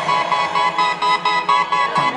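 Live band playing an instrumental passage with a quick repeated riff over sustained chords, heard thinly with no bass.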